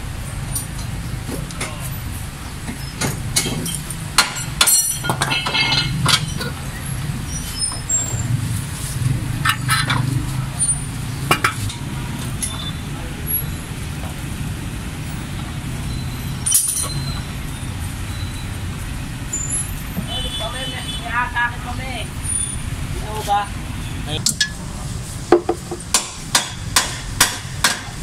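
Hand wrenches clinking and clanking on steel front-suspension parts as nuts and bolts are loosened, over a steady low shop and traffic rumble. Near the end comes a quick run of sharp metallic clicks, one after another.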